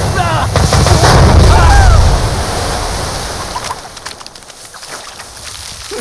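Cartoon sound effect of water erupting from the ground: a loud rushing gush, with a voice crying out over it in the first two seconds. The rush then fades over the next few seconds to a thinner hiss of spraying water.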